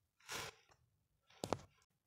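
A person's short, faint intake of breath, then a faint click about one and a half seconds in.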